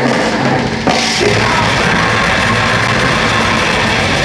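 Death metal band playing live, heard from beside the drum kit, so the drums stand out loud over the band. There is a brief break and a hard accent about a second in before the playing carries on.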